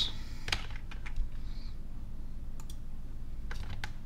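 A few separate clicks from a computer keyboard and mouse, spaced out over a steady low hum.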